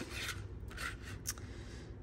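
Cardstock sliding and rubbing against the plastic housing of a craft punch as the stamped truck is lined up in its slot: a few faint, soft scrapes.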